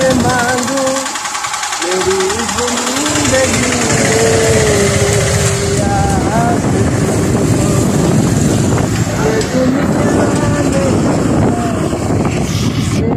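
Motorcycle engine running while riding, with wind rushing over the microphone. Over it a voice sings or hums a wavering tune without clear words, strongest in the first half.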